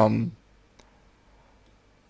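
A man's voice finishing a word at the start, then near silence with one faint click a little under a second in.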